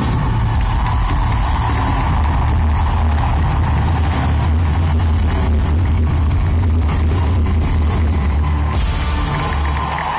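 A live pop band at full volume, heard from the arena crowd, playing out the end of a song over a deep, steady bass. A bright wash swells near the end, and then the band stops.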